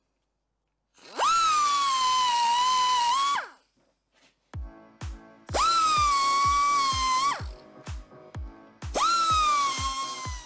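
An electric drill runs in three bursts, drilling a hole for a new turbo oil return. Each burst jumps up to a high whine and sags a little in pitch while it cuts. From about halfway in, background music with a steady kick-drum beat plays under it.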